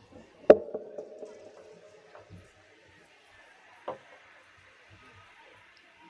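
A microphone being handled, heard through the PA system: a loud knock about half a second in, then a short hum that fades, and a softer knock near four seconds.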